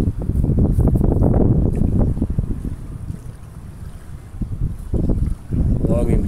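A jet ski running through choppy water, with wind buffeting the microphone and water splashing around a sea turtle carcass towed behind on a rope. It is loudest for the first two seconds, eases off in the middle and picks up again near the end.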